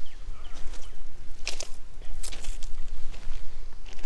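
Footsteps on a crushed-stone gravel path, a few sharp steps about a second and a half in and again just past two seconds, over a steady low rumble.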